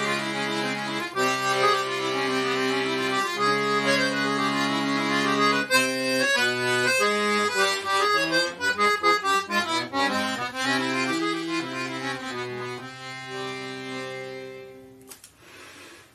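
Pigini free-bass accordion playing an Indian classical phrase: low notes held steady under a melody for about six seconds, then quicker moving notes in both the low and high parts, fading out about a second before the end.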